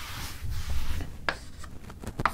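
Chalk being rubbed off a chalkboard by hand, a steady hiss for about a second, then a few short scratches of chalk writing.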